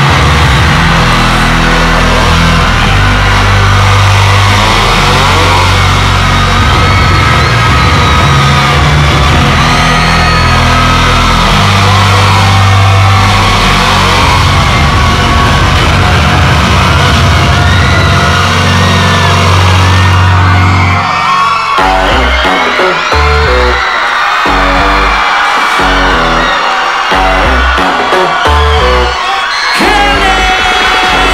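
Loud live arena concert intro music: sustained heavy bass chords with a crowd screaming and whooping over them. About twenty seconds in, it switches to a hip-hop beat of punchy, stop-start bass hits.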